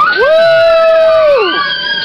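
Several voices whooping together after a flip, in long, high, overlapping held calls that start suddenly and tail off downward after about a second and a half.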